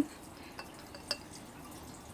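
Sake pouring faintly from a bottle into a glass jar of rock sugar and ume plums, a quiet trickle with a couple of small ticks about a second in.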